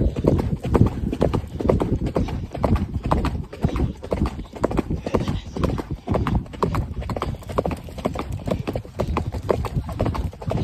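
A ridden horse's hoofbeats on a dirt trail, a rapid, continuous run of strikes at a quick gait.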